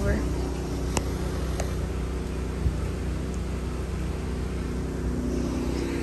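Steady low hum of nearby vehicle engines and traffic, with two short clicks about a second in.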